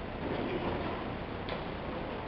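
Low room noise with a few faint, sharp ticks, one clearer about one and a half seconds in; the band is not playing.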